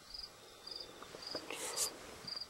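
An insect chirping in short, high-pitched pulses at an even pace of about two a second. A brief rustling noise comes in about one and a half seconds in and is the loudest sound.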